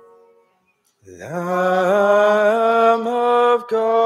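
The last of a piano chord dies away, then about a second in a solo voice begins chanting, scooping up into a long held note that steps slightly higher twice. It breaks off briefly near the end and goes on at a new pitch.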